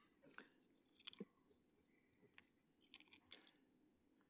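Near silence: room tone with a few faint, short clicks scattered through it.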